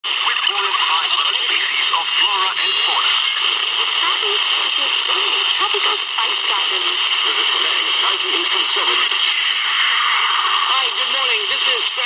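Small analog pocket radio's speaker playing a weak, distant FM broadcast: a presenter's English talk heavily mixed with steady static hiss, the sign of a faint signal picked up at long range on a telescopic antenna.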